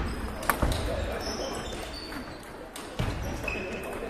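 Table tennis ball clicking a few times as it is bounced ahead of a serve: two quick clicks about half a second in and another about three seconds in, over the chatter of voices echoing in a large sports hall.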